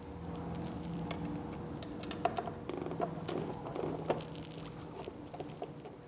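Number one Phillips screwdriver backing out small screws with washers from a Vespa GTS's plastic handlebar cover: scattered light clicks and ticks over a faint steady hum.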